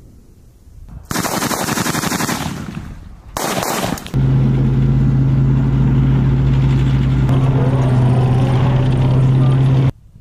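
Two bursts of automatic gunfire, the first about a second and a half long and the second about half a second. Then comes a Bradley Fighting Vehicle's steady diesel engine drone and track noise as it drives off, which cuts off abruptly near the end.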